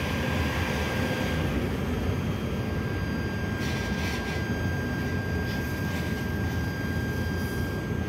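Diesel engine of a loaded fuel tanker truck running steadily at low speed, heard from inside the cab as the truck pulls up, with a faint steady high whine over the rumble.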